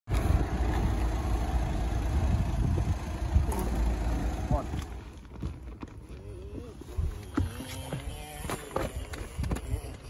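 A low vehicle rumble for the first half, then people talking in low voices.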